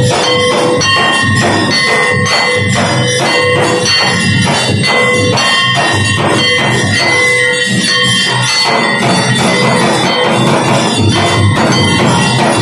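Brass hand bell rung continuously in a quick, even rhythm for the aarti, its ringing tones carrying on between the strokes.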